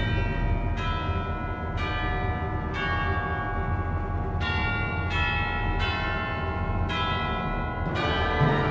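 Symphony orchestra passage led by eight ringing bell strokes, roughly one a second, each left to die away over a low sustained rumble.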